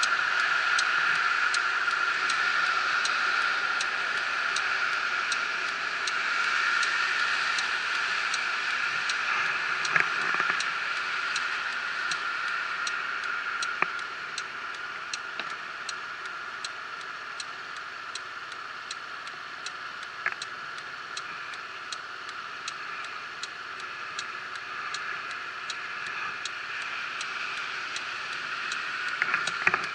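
Scooter's turn indicator ticking evenly, about two ticks a second, over the steady hum of the idling 125 cc scooter while it waits at a red light. A few single knocks stand out now and then.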